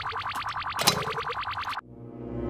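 Rapid, very even clicking, about a dozen clicks a second, that cuts off suddenly near the end, where a low held musical tone comes in.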